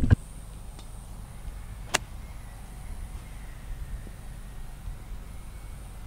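A 7-iron striking a golf ball: one sharp click about two seconds in, over a steady low background rumble.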